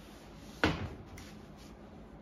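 A ceramic mug full of metal cutlery set down on a kitchen counter: one sharp knock with a brief ring, about two-thirds of a second in.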